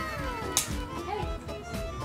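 Background music carrying a falling, whistle-like glide, under the wet slosh of shrimp in thick Padang sauce being poured from a glass bowl onto a table, with a sharp splat about half a second in.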